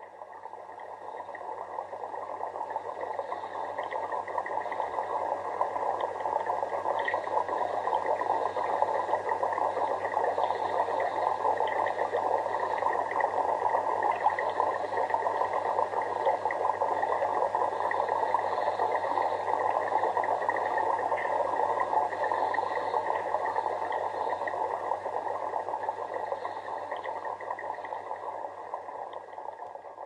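Steady bubbling water noise from a fish tank, with a low, even hum under it. It fades in at the start.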